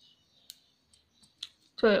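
A few faint, sharp clicks, the clearest about half a second and a second and a half in, from a Clover marking pen being handled against a cloth mask while a mark is made.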